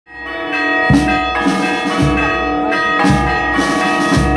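Marching band playing a slow march, with wind instruments holding chords that shift every second or so over a bass drum beat about once a second. It fades in at the very start.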